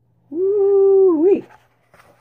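A single drawn-out voice-like tone, held at one pitch for about a second and dipping and rising just before it stops.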